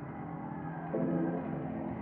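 Background music: soft, slow ambient instrumental with sustained chords, moving to a new chord about a second in.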